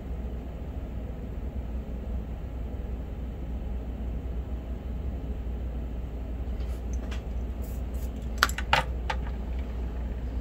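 Steady low background hum, then a few light metallic clicks and clinks about eight to nine seconds in as the soldering iron and the tube of solder are set down.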